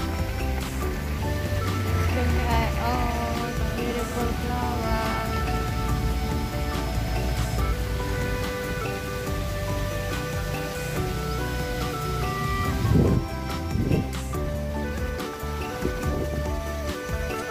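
Background music with held notes and a melody. A brief louder sound rises out of it near the end.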